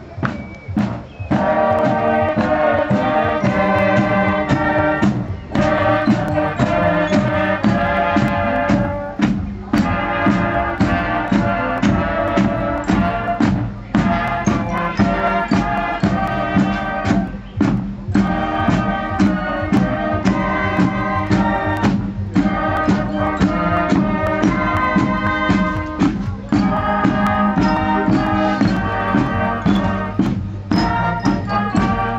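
Marching band playing brass with drums, a sousaphone carrying the bass line. The drums strike steadily under the tune, and the music breaks briefly between phrases about every four seconds.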